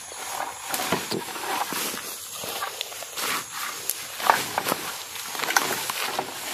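Irregular rustling of leaves, vines and grass stems, with several sharp snaps and knocks, as a wooden-handled spear is jabbed repeatedly into thick undergrowth.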